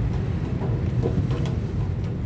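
Steady low rumble of a car driving along a paved lane, heard from inside the cabin, with a few faint light ticks.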